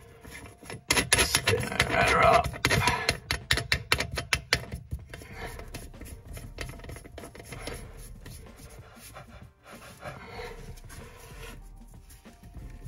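Handling noise from a basin waste fitting being gripped and turned by hand: rapid clicks and scraping of plastic and brass parts, busiest in the first few seconds, then fainter rubbing.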